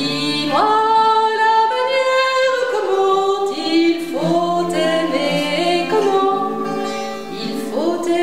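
A woman singing a slow French song, holding long notes and gliding between them, over a low note held steadily beneath.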